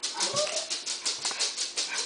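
A cat clawing and batting at a helmet-mounted camera: a rapid run of scratchy strokes, about five or six a second, with a short cat cry near the start.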